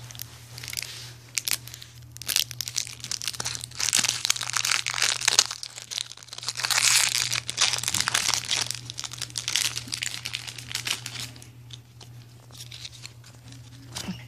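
Foil booster-pack wrapper crinkling in irregular bursts as it is handled and torn open.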